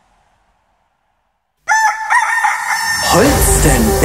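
A gap of silence between two songs, then the next track starts suddenly with a drawn-out crowing call, and band music with a beat comes in about a second later.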